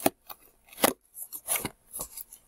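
Scissors cutting through the tape and cardboard seam of a mailing box: several short, sharp snips with gaps between them.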